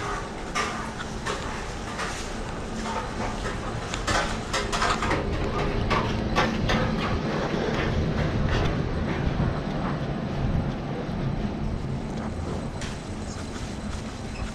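Footsteps walking on pavement, with a low engine rumble that swells in the middle and fades as a small motor scooter passes close by.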